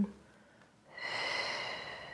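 A woman's long, slow exhale with a faint whistling edge. It starts about a second in and fades away, timed to her knees dropping to the side in a lying spinal twist.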